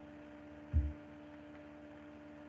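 Steady electrical hum on the microphone line over faint hiss, with a single brief low thump about three-quarters of a second in.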